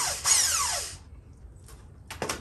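Cordless impact wrench spinning the top nut off a coilover's threaded shaft in one short burst, its whine falling away and stopping about a second in.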